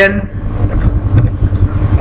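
A steady low rumble, heavy in the bass, fills the gap between words, with the tail of a man's spoken word at the very start.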